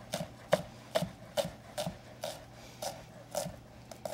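Chef's knife slicing a rolled stack of basil leaves into chiffonade on a cutting board: a steady run of short knife taps on the board, about two to three a second.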